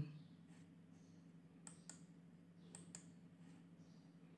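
Near silence with a faint steady hum, broken by two pairs of faint, quick clicks, the first pair about a second and a half in and the second near three seconds.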